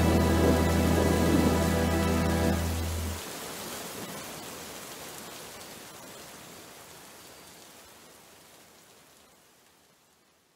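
A final held chord with deep bass ends about three seconds in. Steady rain carries on after it and fades slowly away to near silence.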